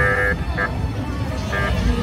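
Three short toots of a horn, each one steady pitched beep, the first and third longer than the brief middle one, over the low rumble of a crowd.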